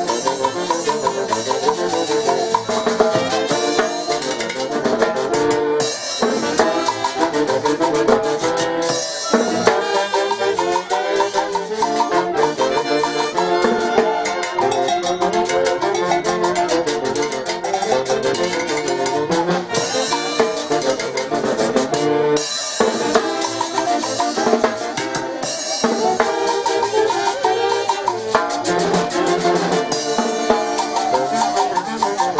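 A live Andean festival band playing a dance tune: saxophones and trumpet carry the melody with violin and harp, over a snare drum and cymbals keeping a steady beat.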